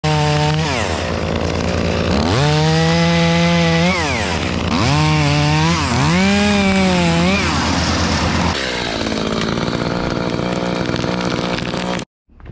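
Two-stroke top-handle chainsaw cutting larch limbs, its engine revving high and dropping back four times. Near the end it settles into a steadier, slightly quieter run.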